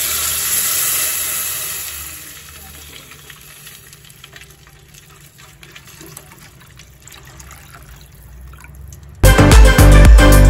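Milk poured in a stream into a steel pot of roasted dry fruits and nuts. It splashes and hisses loudly for the first two seconds, then settles to a faint pour as the pot fills. Background music comes back near the end.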